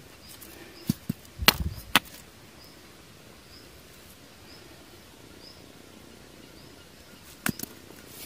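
Quiet outdoor ambience with a few sharp knocks and taps from stones and a machete being handled, clustered in the first two seconds and again near the end. A faint high chirp repeats about every three-quarters of a second in between.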